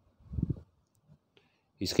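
Near silence broken by one brief soft sound about half a second in and a couple of faint ticks, before speech begins near the end.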